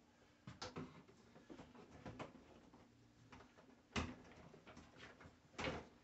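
Corrugated plastic shop-vac hose being handled and wrapped around the top of the vacuum: faint rustling and light knocks, the loudest about four seconds in and again just before the end.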